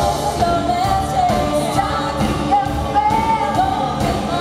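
Live pop band performance: a woman singing a melody of long held notes over a band with drums, recorded from within the audience.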